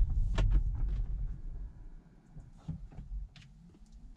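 Low rumble inside the cabin of a slowly rolling Tesla Model 3, dying away as the car slows almost to a stop, with a few light clicks.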